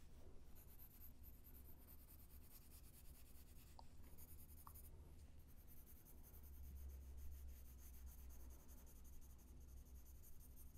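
Faint graphite pencil shading on paper, soft scratching strokes, over a low steady hum.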